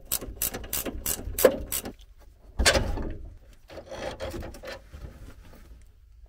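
Ratchet spanner clicking in quick strokes, about four a second, as a nut is run off the threaded bar clamping the gearbox strap. Then a louder metal knock and some scraping and rattling as the strap comes loose.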